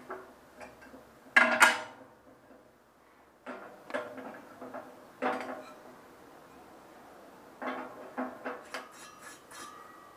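Metal clanks and scrapes of a bandsaw's top wheel being worked loose and lifted off its shaft, the loudest clank about a second and a half in and several more later, some with a short ring.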